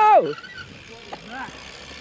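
The end of a long, held shout of "yeah", falling in pitch and stopping within the first moment. Then a quiet open-air background with a faint voice about halfway through.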